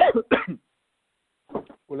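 A man coughs twice in quick succession, heard over a telephone line.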